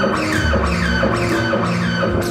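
Live guitar music: held low notes under a repeating figure of quick, falling strikes, about three a second, that comes in at the start.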